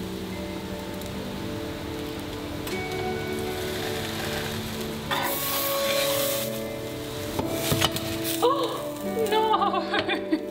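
Background music over a toasted sandwich sizzling in a frying pan, with a metal spatula clinking and scraping against the pan in the last few seconds as it slides under the sandwich.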